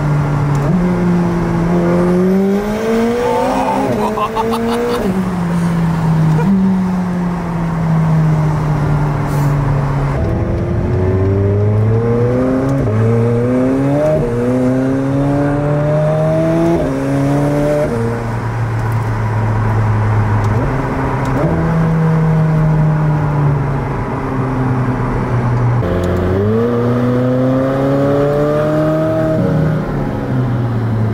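McLaren 765LT's twin-turbocharged 4.0-litre V8 accelerating hard through the gears. The engine note climbs and then drops sharply at each upshift, with several quick shifts in a row around the middle and stretches of steady cruising later on.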